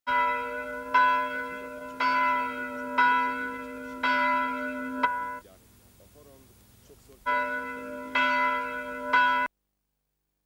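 A single church bell tolling, struck about once a second, each strike ringing on into a steady hum. The tolling breaks off about five seconds in, resumes a little under two seconds later, and cuts off suddenly near the end.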